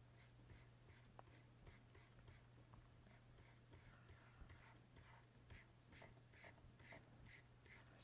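Faint, quick back-and-forth scratching of a pen stylus on a graphics tablet as brush strokes are painted, about two to three strokes a second, over a low steady hum.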